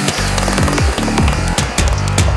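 Electronic trance music from a DJ mix: a driving kick drum with a pitch that falls on each hit, under a dense layer of synth sounds.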